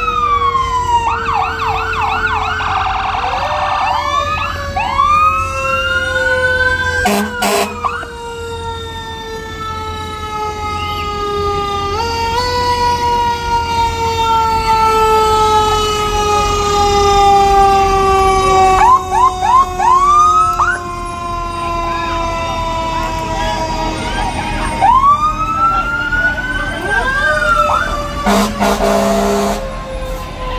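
Fire truck siren in a parade. The wail falls slowly in pitch and is pushed back up a few times, mixed with bursts of rapid rising whoops. Two short loud blasts cut in, one about a third of the way in and one near the end.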